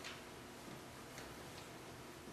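Quiet room with a few faint, unevenly spaced ticks; the first, right at the start, is the clearest.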